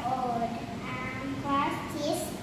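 Speech only: a few short phrases in high, wavering voices that the recogniser did not make out as words.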